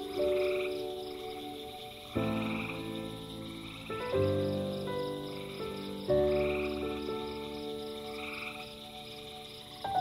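A night chorus of frogs giving short trilled calls about every two seconds, with insects pulsing rapidly at a high pitch. Soft music of sustained chords runs underneath, new chords struck every couple of seconds and slowly fading.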